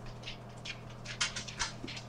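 A dog sniffing in a few faint, short sniffs.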